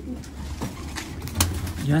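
Racing pigeons cooing in their loft, with one sharp click about a second and a half in.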